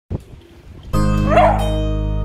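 Plucked-string background music starts about a second in, and a beagle gives one short bark over it.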